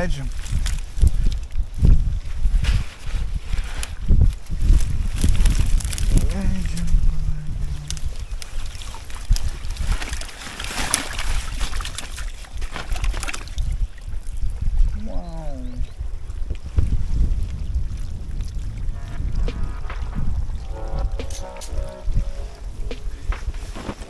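Wind buffeting the microphone while a mesh fish keepnet is lifted from the water and drained, with water pouring and sloshing out of it.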